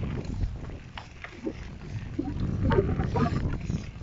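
Handlebar-mounted phone riding on a bicycle over paving slabs: wind buffeting the microphone with a steady rumble, and scattered knocks and rattles as the wheels cross the slab joints.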